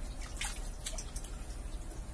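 Water dripping and splashing back into a pond from a plastic sieve lifted out of it, a quick run of drips and small splashes in the first second or so.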